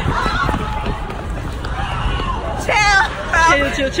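Several people running on a city sidewalk, with footfalls and rumble from the jostled handheld phone, amid crowd chatter. A loud, high-pitched shout rises above the voices about three seconds in.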